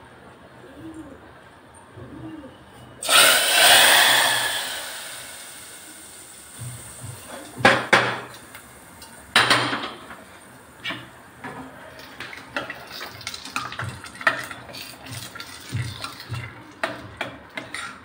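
Hot oil tempering is poured into a pot of curry and sizzles loudly about three seconds in, fading over the next couple of seconds. Then come two sharp metal clanks, and then a steel ladle clinking and scraping against the pressure cooker as the curry is stirred.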